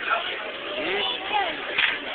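A high-pitched voice making wordless, gliding sounds over steady background noise, with a short noisy burst near the end.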